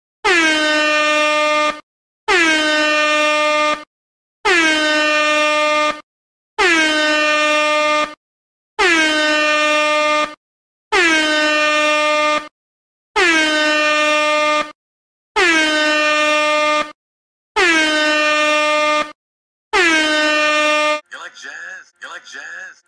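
Air horn sound effect blasting ten times in a row. Each blast lasts just under two seconds, dips slightly in pitch as it starts, then holds one steady loud tone, with short gaps between blasts.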